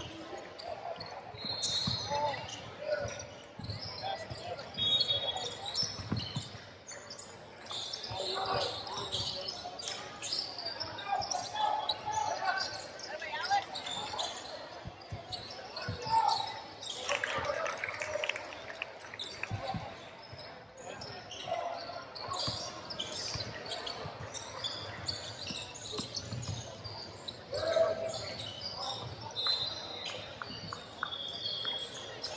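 Basketball dribbled and bouncing on a hardwood gym floor, with a few short high squeaks and indistinct shouts from players and onlookers, echoing in a large hall.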